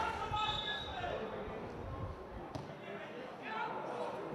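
Footballers' calls carrying across a sparsely filled stadium during play, with a single sharp knock about two and a half seconds in.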